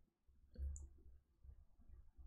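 Near silence over a low steady hum, with a few faint clicks, the clearest about half a second in, from handwriting being entered on a digital whiteboard.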